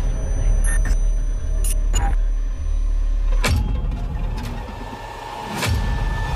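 Horror-trailer sound design: a deep, steady low rumble under several sharp hits, the strongest about three and a half seconds in and again just before the end.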